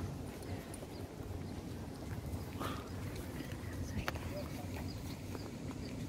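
Outdoor ambience: a steady low rumble with scattered light clicks and taps, and faint voices of people in the distance.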